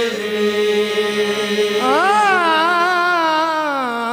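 Qawwali singing: a man's lead voice holds a long, wordless melodic phrase over a steady drone. The voice glides up about halfway through, wavers, and slowly sinks again.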